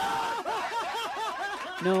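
A person laughing in a quick run of short, high-pitched bursts, about four a second.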